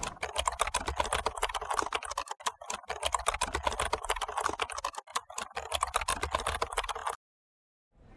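Rapid typing on keys, a dense run of clicks that stops abruptly about seven seconds in.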